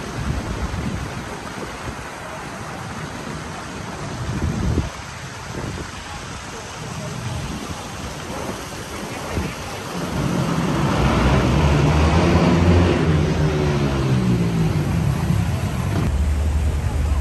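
Street noise: a steady rushing hiss of wind and traffic. From about ten seconds in, a louder motor vehicle engine is heard, its pitch rising and falling as it drives along the street.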